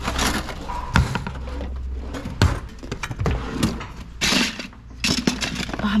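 Kitchen drawers pulled open and shut and their contents rummaged through by hand: a run of sharp knocks and clatters, the loudest about a second in and two and a half seconds in, with rustling of loose items and packaging later on.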